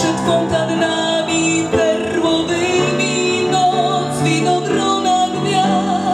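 A woman singing a jazz-styled ballad in a full, dark voice, accompanied by piano played live.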